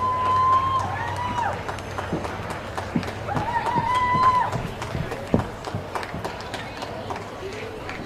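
A person's voice calling out twice, each call drawn out on one high pitch and then dropping away.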